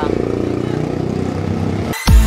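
A motorcycle engine running steadily close by in street traffic.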